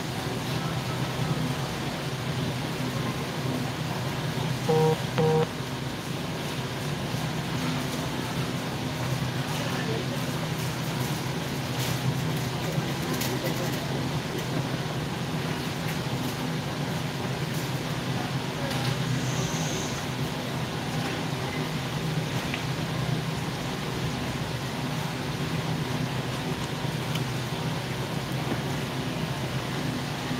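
Steady mechanical hum of a warehouse store's refrigerated display cases and ventilation, with a short beep about five seconds in.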